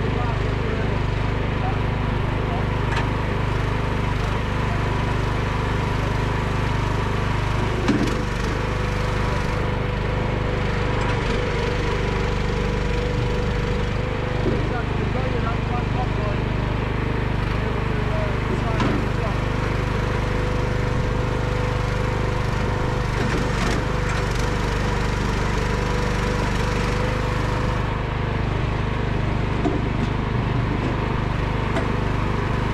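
Bosworth FP 480 F firewood processor's engine running steadily under load while the machine cuts and splits a log, with a few sharp wooden knocks.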